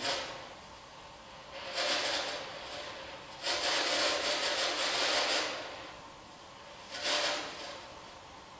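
Three bursts of hissing noise, each rising and fading over one to two seconds, with quieter gaps between.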